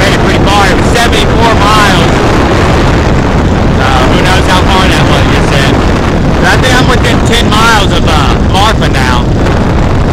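Motorized bicycle's small gasoline engine running steadily at cruising speed, mixed with loud wind buffeting the microphone.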